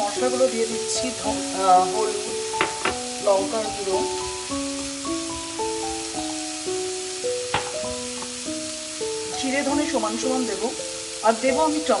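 Diced vegetables sizzling in oil in a stainless-steel pan, with a few sharp clicks, under background music: a slow melody of held notes.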